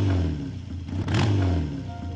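Motorcycle engine revved in two short throttle blips about a second apart, the pitch falling back after each.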